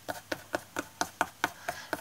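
Fingertips tapping quickly on a stretched canvas, about five taps a second, pressing gilding foil flakes down onto the surface.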